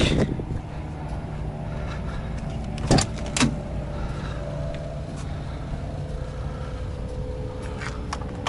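Steady low drone of an idling diesel semi-truck engine, with two sharp knocks about three seconds in.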